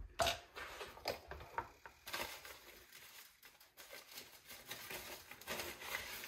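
Faint small clicks and scrapes of a plastic debubbling tool against a glass canning jar of marmalade, then the soft rustle of a paper towel being handled.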